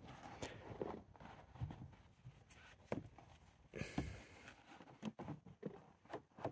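Faint rustling and rubbing of a microfibre cloth being worked back and forth behind a car door's manual window winder handle, with a few soft knocks from the handle and plastic door trim.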